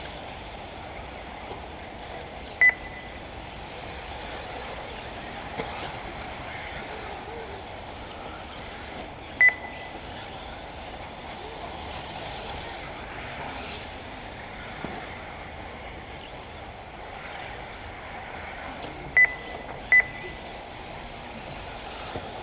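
Four short, sharp electronic beeps: one about three seconds in, one about nine seconds in, and two in quick succession near the end. They rise above a steady background hiss and are typical of an RC race lap-timing system beeping as buggies cross the timing loop.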